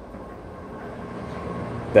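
Steady rushing hum of a basement HVAC system's blower running, growing slightly louder as the furnace comes closer.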